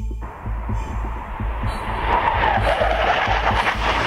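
Music with a heavy pulsing bass beat, joined about a quarter second in by the roar of a military fast jet that swells and stays loud to the end.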